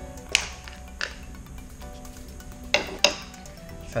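A small clear hard-plastic packaging case being opened by hand: four sharp plastic clicks and snaps, two near the start and two near the end, over background music.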